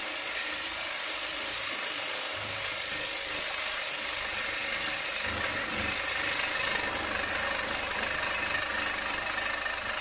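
Reciprocating saw with a Diablo Steel Demon blade cutting through black steel pipe: a steady, loud rasping of the blade sawing the metal, with a constant high whine.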